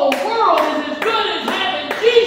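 A few sharp hand claps, about four in two seconds, over a man preaching in a loud, amplified voice in a large hall.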